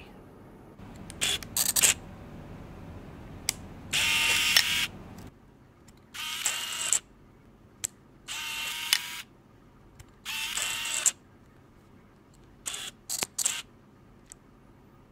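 Nikon 28Ti compact film camera being operated: sharp shutter clicks, and four times its motor whirs for about a second at a steady pitch. A quick run of clicks comes near the end.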